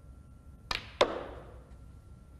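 Snooker cue tip striking the cue ball, then about a third of a second later a louder click as the cue ball hits a red, with a brief ringing decay.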